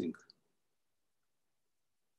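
The end of a man's spoken word, then near silence.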